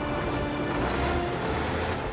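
Background music over the steady low rumble of a loaded articulated rock truck driving on a dirt haul road.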